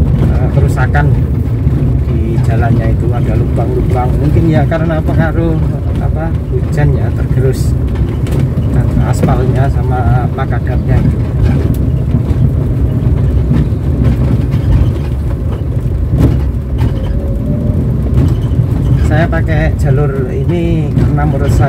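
A 2007 Daihatsu Terios TX running on the road, heard inside the cabin as a steady low rumble of engine and road noise. A voice wavers along over it.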